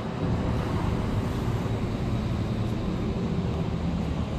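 A steady low rumbling noise with an even hiss above it, constant throughout.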